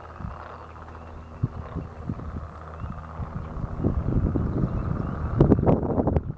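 A chorus of frogs croaking in a marsh, many short croaks overlapping. Growing louder in the second half, with wind buffeting the microphone near the end.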